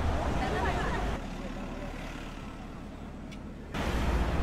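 Street ambience: a steady hum of road traffic with some indistinct voices. It drops quieter about a second in and comes back abruptly near the end.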